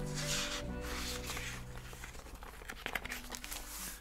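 Paper pages of a thick journal being flipped, rustling twice in the first two seconds, over quiet background music.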